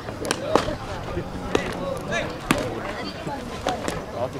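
About five sharp knocks over four seconds from soft rubber baseballs being hit and caught in a fielding drill, the loudest about half a second in and halfway through, with players' shouts between them.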